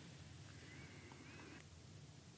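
Near silence: room tone with a low steady hum, and a faint thin wavering tone for about a second near the middle.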